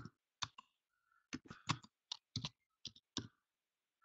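Faint typing on a computer keyboard: about ten short, irregularly spaced keystrokes.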